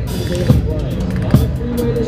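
Drum and bugle corps show music: held, bending notes over a dense low band, with two sharp low drum strikes, about half a second in and near the end.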